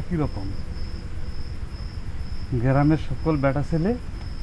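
Crickets chirping steadily in the background, a high trill that pulses about twice a second, under short bits of spoken Bangla dialogue.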